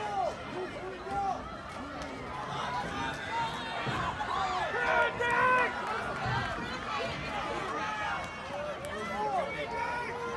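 Spectators shouting and cheering for passing runners, several voices overlapping at once, loudest about five seconds in.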